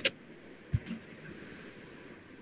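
A sharp click right at the start, then a short dull low thump just under a second in, followed by a few faint ticks, over a low steady hiss.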